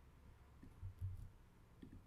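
Near-silent room tone with a few faint computer clicks around the middle, as text is pasted into a chat box and sent.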